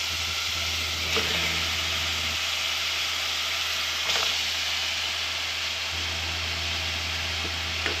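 Chopped tomatoes, onion and spices sizzling steadily in hot oil in an aluminium pot, with a couple of brief knocks as raw chicken pieces go into the pot.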